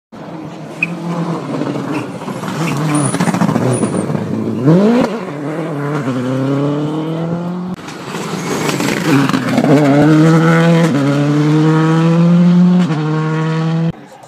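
Rally car engines run hard at full throttle. The revs climb, then drop in steps at each gear change, over two separate passes with a cut about eight seconds in.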